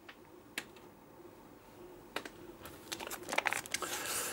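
Handling of a Blu-ray steelbook in a clear plastic protector case: a single light click, another about a second and a half later, then a run of soft plastic clicks and rustling near the end as the case is picked up and moved.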